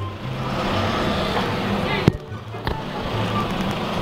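Car cabin noise of a Mitsubishi moving slowly: a steady engine and tyre hum, with a sharp click about two seconds in.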